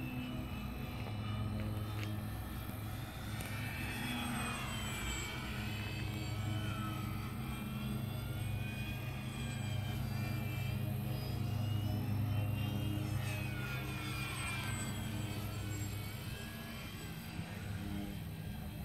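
Electric motor and propeller of an E-flite P-51 Mustang 1.2 m radio-controlled model plane whining in flight. The whine swells and glides in pitch as the plane passes, twice: about four seconds in and again near fourteen seconds.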